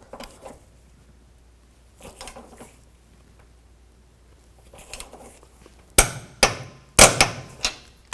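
Torque wrench on a strut top-mount nut giving two sharp metallic clicks about a second apart near the end, each followed by a smaller click, as it reaches its set torque of 59 foot-pounds.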